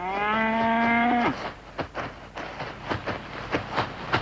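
A cow moos once: one long call that rises at first, then holds steady and cuts off about a second and a half in. Soft, irregular knocks follow.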